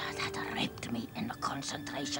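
A woman whispering breathily, over soft music with held, steady tones.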